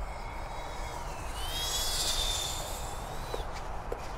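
Diatone GT R349 FPV quadcopter on eight-blade HQProp 76 mm propellers, punched to full throttle and climbing hard. Its motor-and-propeller whine rises in pitch about a second in, is loudest around two seconds in, and fades near the end.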